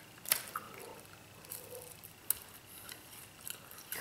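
Quiet handling of bread and smoked trout at a table, with two sharp clicks: one just after the start and another a little past halfway.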